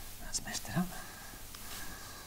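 Quiet handling sounds: a few faint taps as a ruler and pen are laid on paper, and a brief low murmur under a second in.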